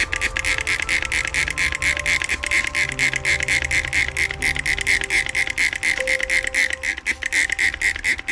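White plastic trigger spray bottle squeezed rapidly, misting water onto a moss ball: a fast, even run of short hissing squirts, several a second. Soft background music plays underneath.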